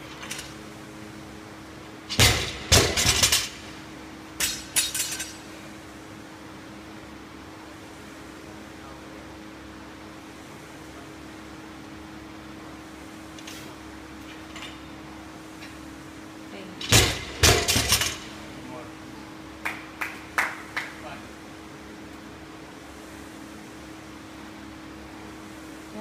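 A 250 lb barbell loaded with rubber bumper plates dropped onto a concrete floor twice, about fifteen seconds apart, each landing a cluster of loud bangs followed by a few smaller bounces. A steady low hum runs underneath.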